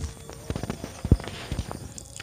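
A few irregular light knocks and clicks, the loudest about a second in, from hands working at a clutch slave cylinder's bleed nipple as it is being closed after brake fluid starts coming out during clutch bleeding.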